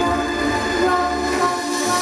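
Live electronic music: held chord tones over a low bass.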